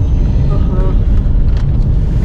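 Steady low road and engine rumble inside the cabin of a moving Chery Tiggo 7 Pro, with a brief faint voice about half a second in.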